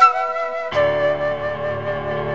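Electronic keyboard playing a flute-voiced melody. About a third of the way in, a fuller chord with bass enters and is held.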